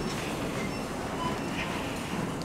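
Steady background noise with no clear single source, at a moderate level.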